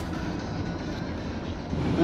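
Steady road noise of a van driving along a highway.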